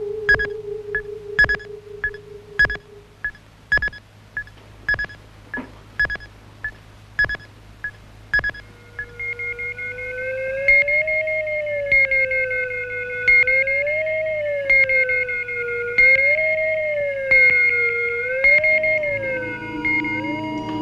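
Electronic sound effect: short regular beeps, about one every half second with every second one louder, for the first eight seconds or so. Then a wavering theremin-like electronic tone that rises and falls, over a steady high whine.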